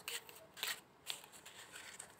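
A deck of round tarot cards being shuffled by hand: several soft card flicks and slides in the first second or so, then fainter rustling.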